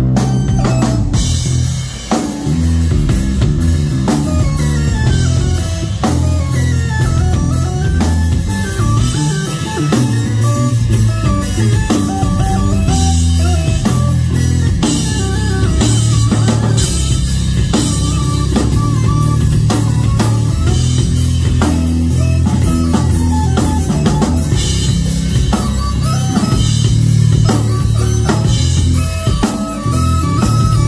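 Live instrumental rock jam played by a band: electric bass and drum kit with a Korg keyboard playing lines over them, with steady cymbal work.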